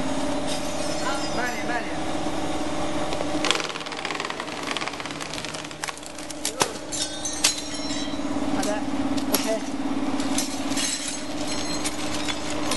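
Cable stripping machine running with a steady electric-motor hum as a thick armoured cable is fed through its rollers. Scattered sharp cracks and clinks come as the plastic sheath and corrugated aluminium armour are cut and split. The hum fades for a couple of seconds midway.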